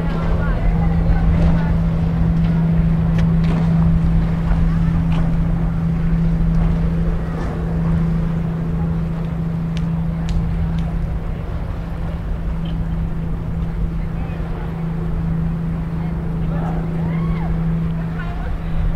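A steady low hum at one unchanging pitch, over a low rumble, with faint voices of people around.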